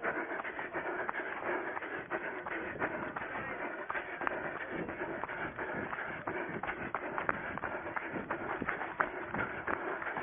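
A runner's footsteps going through grass and rough ground, heard close up from a camera worn on the runner's body, with many irregular footfall strikes over a steady rustle.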